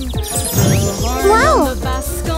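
Upbeat children's cartoon music with a tinkling sound effect near the start. Just past halfway, a high cartoon voice calls out with a rise and fall in pitch.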